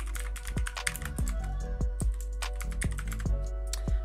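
Typing on a computer keyboard: a quick, irregular run of key clicks, with background music playing underneath.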